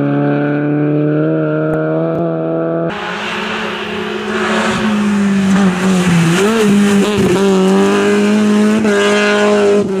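BMW E30 rally car's engine running hard under load, first as the car drives away, then, after a cut about three seconds in, as it comes past and pulls away. Its note dips and climbs again a few times around the middle, as the throttle is eased and reapplied.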